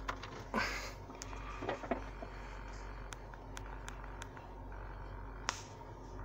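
Steady low hum inside the cabin of an idling 1997 Cadillac DeVille, its 4.6-litre Northstar V8 running with the climate control on, with a few faint clicks.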